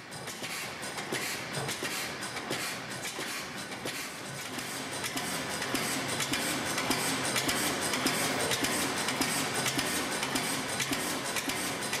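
An old engine with a large flywheel running at a steady, rhythmic beat.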